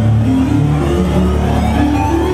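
Live band's keyboard synthesizer playing a loud, droning low electronic intro, with held notes shifting in pitch over a steady deep bass, as a song starts up through the venue PA.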